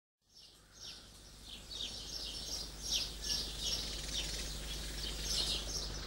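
Birds chirping, short falling chirps repeated about two or three times a second, over a low steady hum; the sound fades in at the very start.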